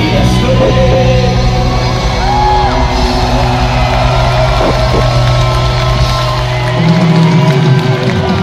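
Czech hard-rock band playing live through a large arena sound system, with crowd yells mixed in; the low bass stops right at the end.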